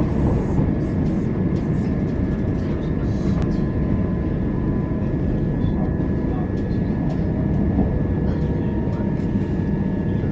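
Steady rumble of a moving passenger train heard from inside the carriage, with a faint high steady whine over it.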